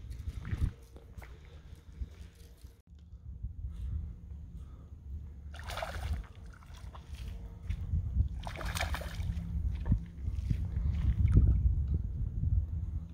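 A hooked small snook thrashing at the surface of shallow water, with two short bursts of splashing about six and nine seconds in. Wind rumbles on the microphone throughout.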